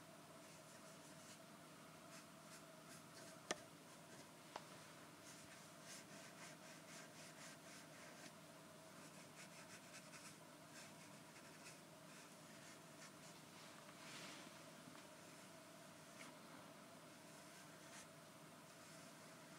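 Faint scratching of a pen writing close to the microphone, in short strokes, with two small sharp clicks about three and a half and four and a half seconds in.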